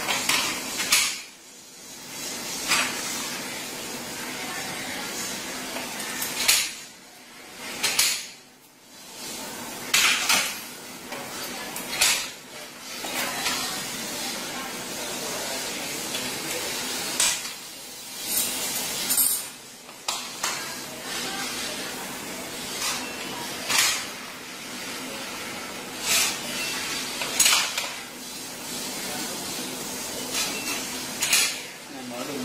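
Fingerprint smart lock on an aluminium door being worked by hand: a string of separate metallic clicks and clinks from the handle, key cylinder and latch, spaced a second or a few seconds apart, over a steady hiss.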